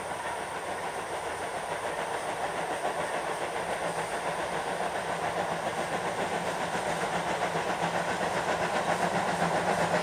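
JNR Class C57 steam locomotive C57 180 approaching with its train, its exhaust beating in a steady rhythm with the hiss of steam, growing steadily louder as it draws near.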